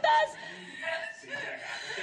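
A spoken line ends at the very start, followed by quiet chuckling.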